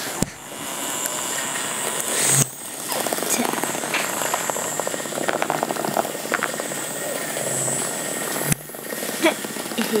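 Indistinct voices in a room, too unclear to make out words, broken three times by abrupt cuts with sharp clicks.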